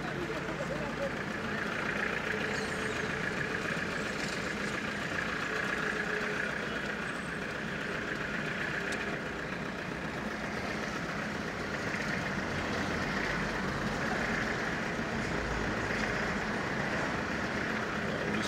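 Steady engine and road noise of a car moving slowly along a street, heard from inside the car, with indistinct voices in the background.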